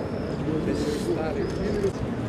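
Indistinct man's voice reciting prayers at a distance over outdoor background noise.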